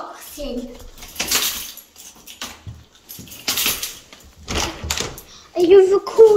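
A bunch of keys jangling in a front-door lock several times, in short bright rattles, with children talking.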